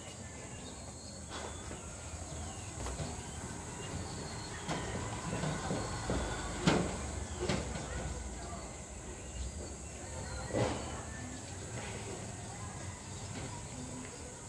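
Strong wind on the microphone, with a scattering of sharp clicks as clothes hangers are hooked onto a metal drying rack, the loudest about seven seconds in.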